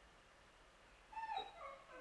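A short high-pitched whimper about a second in, falling in pitch, followed by a second smaller whine.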